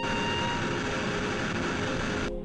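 A loud, steady rushing roar of noise, like a jet or strong wind, that cuts in suddenly in place of the music and stops just as suddenly.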